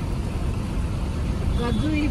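Steady low road and engine rumble heard from inside a moving car's cabin. A voice comes in near the end.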